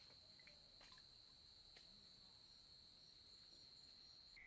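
Faint, steady, high-pitched insect trill holding one pitch, with two faint clicks about one and two seconds in.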